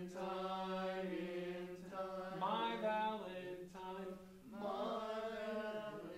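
Men's barbershop chorus singing sustained chords in close harmony, holding a chord for about two seconds, then moving to a second and a third chord, in a short phrase being drilled part by part.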